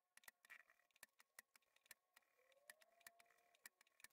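Near silence, with only a few very faint ticks.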